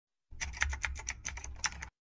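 A rapid run of light clicks, about eight a second, over a low hum, like keys being typed: the sound effect of a channel logo intro. It starts about a third of a second in and stops just before the logo appears.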